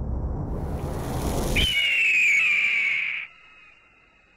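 Logo sound effect: a rising whoosh that swells and cuts off, then a loud bird-of-prey screech that slides slightly down in pitch and stops abruptly about three seconds in.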